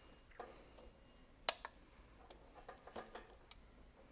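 A few faint, scattered clicks of hand wiring work: a wire stripper on low-voltage control wires and the wires being handled, with one sharper click about a second and a half in.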